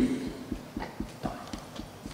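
A series of soft, dull knocks, about four a second, picked up by a table microphone while papers are handled on the desk.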